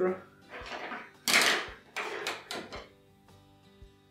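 Several bursts of rustling as a polyester fiber-fill cloud is handled, the loudest about a second and a half in, over soft background music.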